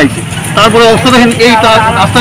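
Speech: a person talking close to the microphone.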